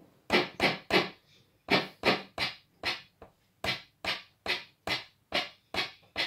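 Prototype SynClap electronic handclap generator firing a string of short synthesized claps, about two and a half a second, with a brief gap near one second in. The claps jump up and down in level as the resonance control is turned, which the builder blames on the pot.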